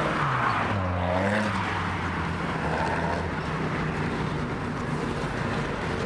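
Road traffic: a motor vehicle's engine passes close by during the first second or so, its pitch bending as it goes. Steady traffic noise follows.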